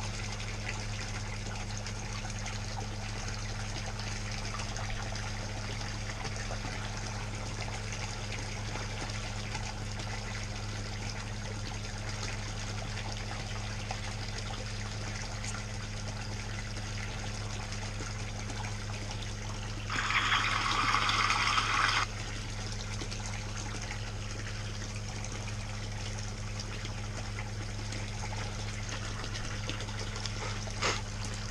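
Water from a PVC return pipe pouring and splashing steadily into a pool pond, with a steady low hum underneath. About two-thirds of the way through, a louder rush of noise lasts about two seconds.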